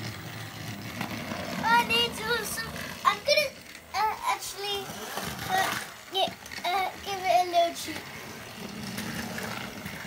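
A child's high voice calling out several short, sliding sounds without clear words, over the steady low whir of battery-powered toy train engines running on plastic track. The whir shows most plainly before and after the calls.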